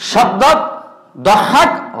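A man speaking at a microphone, in two short loud bursts of speech.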